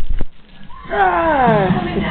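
A few sharp knocks, then about a second in a person's voice in one drawn-out call that slides down in pitch.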